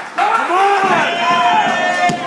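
A man's voice calling out loudly, the words not clear.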